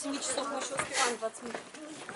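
Indistinct voices of people talking nearby, with no clear words.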